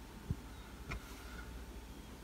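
Quiet room tone with a steady low hum, a soft low thump about a third of a second in, and a faint click about a second in.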